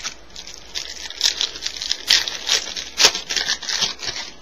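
Baseball card pack wrapper crinkling and tearing as a pack is opened by hand. The crackling rustle grows busy and loud from about a second in.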